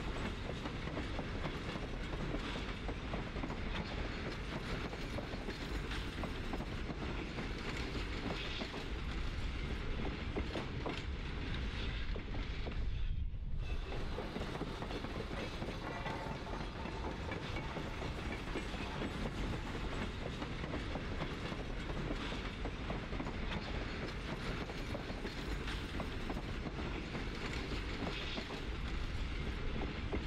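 Freight ore train hauled by Alco RS-2 diesel locomotives rolling steadily, its wheels clicking over the rail joints. The sound dulls briefly about thirteen seconds in.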